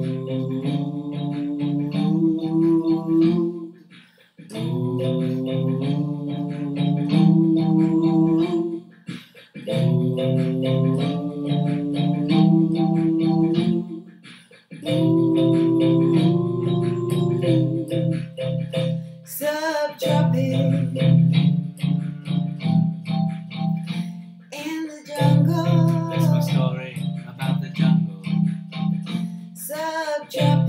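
Music: a man and a woman singing wordless 'ooh' phrases together over a low instrumental backing. The phrases repeat, each about four to five seconds long, with short breaks between them.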